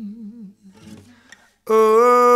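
A solo voice holds a sung note that wavers in vibrato and fades out within the first half second. After a quiet gap, a new long, steady hummed note starts loudly about a second and a half in.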